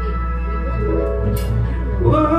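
Instrumental backing music of a slow ballad playing sustained chords over a steady low tone, in a gap between sung lines.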